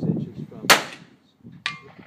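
A single revolver shot, followed just under a second later by the faint ring of the bullet striking a distant steel target.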